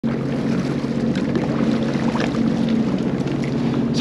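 Sea-Doo personal watercraft engine idling with a steady low hum.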